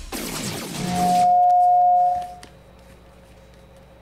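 Closing sting of a radio station jingle: a swell that builds into a loud held tone, which ends a little over two seconds in and leaves the rest quiet.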